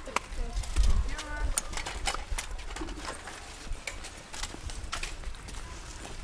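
Footsteps and scooter wheels clicking and knocking irregularly on brick paving, with a brief child's voice about a second in and wind rumbling on the microphone.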